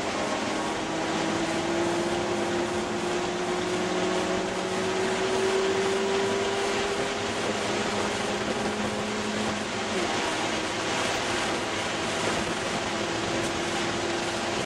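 Ford Escort ZX2's 2.0-litre four-cylinder engine running hard on track, heard from inside the cabin over wind and road noise. Its note rises slowly for several seconds, then falls about ten seconds in.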